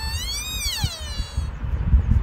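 A sika deer stag's high whistling call: one long note that rises to a peak about half a second in, then slides down and dies away after about a second and a half. Low wind rumble on the microphone runs underneath.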